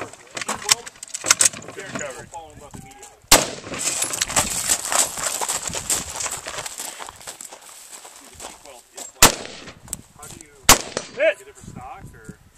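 AR-15-type rifle (Rock River Arms LAR-15, 5.56 mm) being cleared after a misfeed: a quick clatter of metal clicks, then a single shot about three seconds in. A few seconds of rustling and footsteps follow as the shooter moves through grass, then two more sharp rifle shots near the end.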